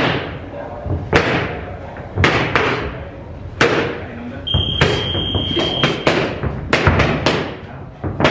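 Boxing gloves punching focus mitts, a string of irregular sharp smacks, single and in quick combinations, ringing off a large hall. A steady high electronic beep sounds for about a second and a half midway.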